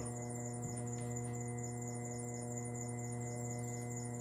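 A steady low electrical hum with a ladder of even overtones above it, unchanging in pitch and level.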